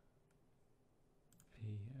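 A few faint computer mouse clicks, the last two close together, as menu items are picked from a right-click menu.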